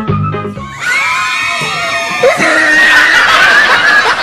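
Music cuts off suddenly about a second in, the musical-chairs signal to grab a seat. High-pitched screams follow, then loud laughter from the players and onlookers.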